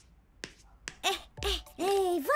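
Two light, sharp taps of a small toy mallet on a block, about half a second apart, then a cartoon character's voice from about a second in, louder than the taps.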